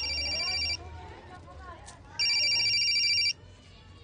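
Mobile phone ringtone: two electronic rings, each about a second long with a pause of about a second and a half between them, going unanswered until the call is picked up.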